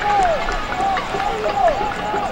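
Players shouting to each other across a football pitch, short loud calls that rise and fall in pitch, over the open ambience of a near-empty stadium.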